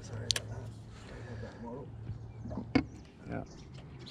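Electric trolling motor running on spot lock to hold the boat in place, a steady low hum, with a couple of sharp clicks of handling on board.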